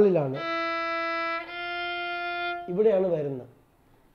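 A violin bowed in two long, steady notes of about a second each, the second a little higher than the first, with a man's voice briefly before and after.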